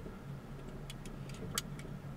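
A car engine running steadily at low speed, a low even hum, with a few short sharp clicks between about one and two seconds in.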